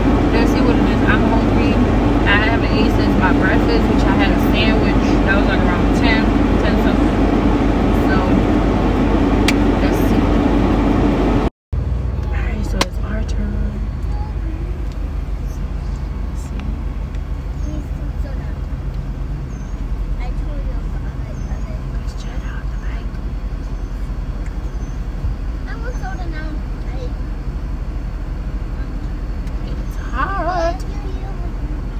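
Steady low rumble and hum of a car, heard from inside its cabin, with voices at times. The sound cuts out abruptly about eleven seconds in and resumes quieter.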